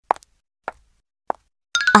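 Three short cartoon pop sound effects, evenly spaced about half a second apart, with a woman's voice starting near the end.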